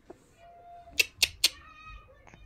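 A baby's high-pitched vocal sounds: a short held note, three quick sharp clicks about a second in, then a higher wavering squeal.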